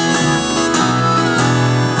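Harmonica playing an instrumental fill over acoustic guitar and bass accompaniment in a folk-country song.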